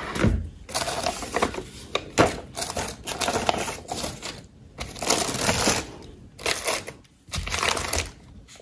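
Tissue paper and paper rustling and crinkling as a packed box of skincare products is unwrapped by hand, in uneven rustles that come and go.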